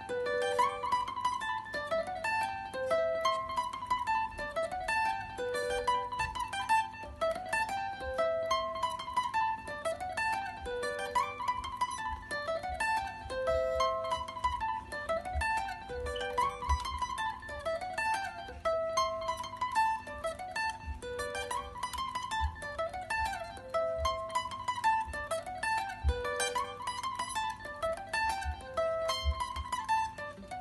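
Stratocaster-style electric guitar played with the fingers in a fast soukous pattern: quick runs of high single notes, some slightly bent, repeating the same short phrase about every two and a half seconds.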